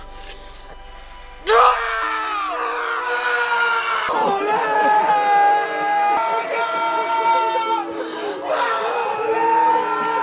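A man breaks into a loud anguished scream about a second and a half in, and cries of grief go on over film music.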